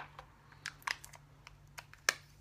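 Light, irregular clicks and taps of small makeup containers and a brush being handled, over a faint steady hum.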